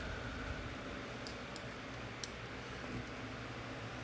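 A small screwdriver turning the tiny end-cap screws of a USB SDR dongle: a few faint, sharp clicks, one a little louder about two seconds in, over quiet room noise.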